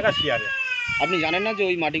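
A long, high-pitched call that slowly falls in pitch for most of two seconds, heard over a man talking.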